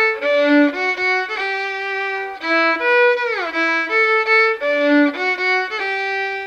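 Solo violin bowing a slow melodic phrase of sustained notes, with a long downward slide between notes twice, once about three seconds in.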